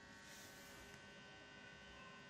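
Near silence: room tone with a faint, steady electrical hum and a thin high whine.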